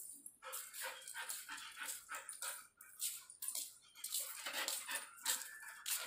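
Pet dog making a string of short, irregular sounds, a few a second.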